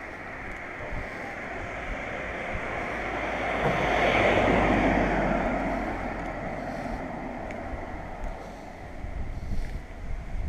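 A car passing on the road, its tyre and engine noise swelling to a peak about four to five seconds in, then fading as it drives away.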